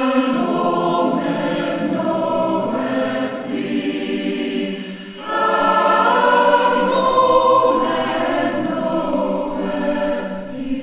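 Mixed-voice choir singing a carol in sustained chords; the singing breaks off briefly about five seconds in and comes back louder.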